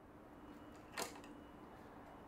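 A single sharp click about a second in, as a Collins spring clamp is snapped onto a glued mitre corner of a small oak box with its spreading pliers, over a faint steady hum.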